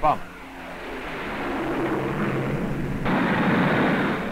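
Avro Shackleton's four Rolls-Royce Griffon piston engines with contra-rotating propellers drone as the bomber flies past, growing steadily louder. About three seconds in, the sound switches abruptly to a louder rushing engine noise.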